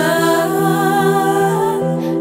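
A woman's voice holds one long sung note with a slight waver, over a sustained synthesizer chord and bass in a pop song.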